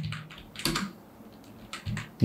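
Typing on a computer keyboard: a quick run of keystrokes, a pause, then a few more keystrokes near the end.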